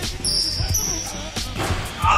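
A basketball dribbled a few times on a hardwood gym floor, with short high sneaker squeaks, over background music.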